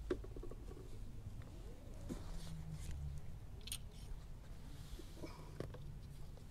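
Faint handling noises: scattered small clicks and scrapes as a plastic oil bottle and funnel are picked up and moved, over a low steady background hum.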